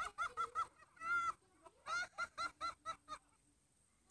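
High-pitched cackling laughter: runs of rapid 'ha-ha' bursts, about five a second, with one longer drawn-out note about a second in. It stops shortly after three seconds in.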